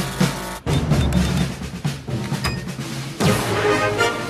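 Dramatic cartoon background score with heavy drums, swelling louder near the end.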